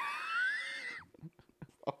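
A man's high-pitched, squealing laugh: one rising, held note lasting about a second, followed by a few short breathy gasps.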